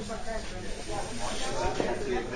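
Faint, indistinct voices of people talking in a hall, over steady background noise.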